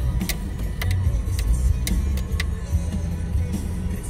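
A car's low engine and road rumble inside the cabin, as it rolls slowly along a street, under music playing throughout. A few sharp clicks come roughly every half second in the first half.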